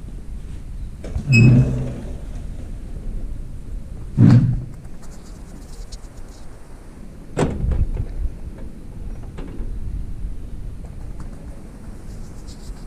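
A room's sliding window being opened by hand: a thud with a short squeal about a second in, another thud about four seconds in, and a sharp knock at about seven seconds.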